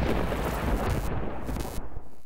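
Title-sting sound effect for an animated highlights graphic: a loud, noisy rumble with a deep bass. Its hiss thins out about a second in, flares briefly once more, then stops near the end.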